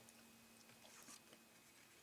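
Near silence: room tone, with a few faint ticks about a second in.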